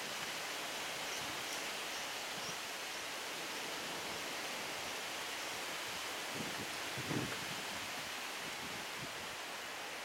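Steady outdoor background hiss with no clear single source, with a few faint high ticks in the first few seconds and a brief low bump about seven seconds in.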